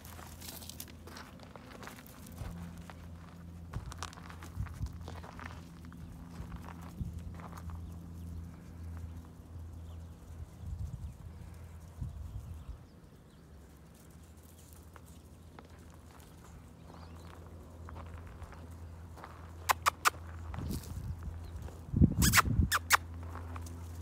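Footsteps crunching on gravel, with a low steady hum underneath; a cluster of louder, sharper sounds near the end.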